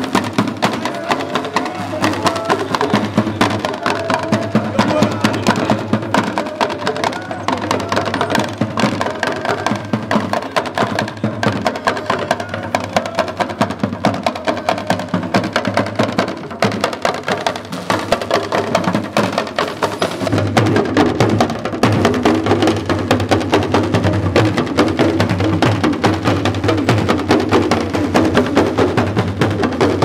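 A group of Dagomba hourglass talking drums (lunsi drums), held under the arm and struck with sticks, playing a fast, steady dance rhythm. The drumming gets fuller and deeper about twenty seconds in.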